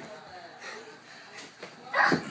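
Young boys' voices making faint, wavering whiny sounds during a pillow fight, with a couple of soft knocks about a second and a half in. A louder shout starts right at the end.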